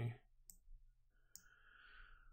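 Two faint computer-mouse clicks about a second apart, then a soft hiss.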